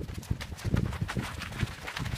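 Running footsteps of a group of runners passing close by on a gravelly dirt track: many quick, overlapping footfalls of shoes striking and scuffing the ground.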